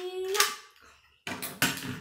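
A child's drawn-out "My…" trails off about half a second in. Then come short plastic-and-metal clicks and knocks as a Beyblade top is handled and fitted onto its launcher.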